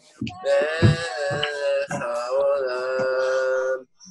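A solo singer holding long, wavering 'na' notes over a backing track with a steady beat, heard through a video call; the singing stops just before the end.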